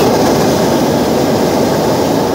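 Hot air balloon's propane burner firing: a loud, steady blast that cuts in suddenly at the start.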